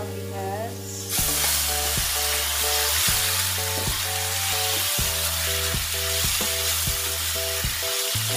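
Ingredients going into a hot oiled pan, which starts sizzling loudly about a second in and keeps frying steadily, with stirring.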